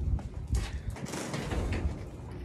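Footsteps on hard ground with rustling handling noise from the handheld phone, a string of uneven knocks and scuffs.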